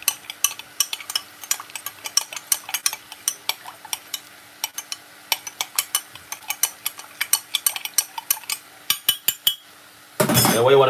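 Metal spoon stirring vegetable stock in a glass measuring jug, clinking rapidly against the glass about three or four times a second as the stock is dissolved in water. The clinking stops shortly before the end.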